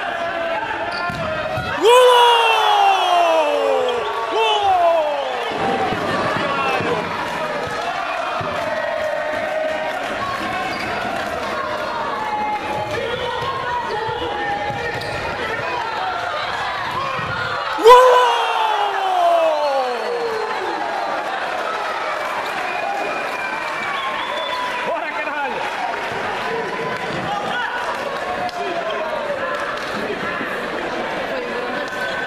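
Futsal being played in a large, echoing sports hall: the ball being kicked and bouncing on the wooden court, with shouts from players and bench. Two sharp bangs, about two seconds in and again about eighteen seconds in, are each followed by a loud cry that falls in pitch over a couple of seconds.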